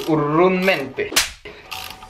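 A strained voice, then one sharp metallic crack a little past a second in from a spanner turning a tight bolt on a motorcycle's rear sprocket.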